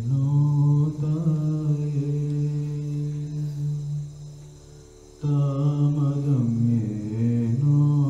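Low male voice chanting a mantra in long held notes with small glides between them. It fades away about four seconds in and starts again abruptly just after five seconds.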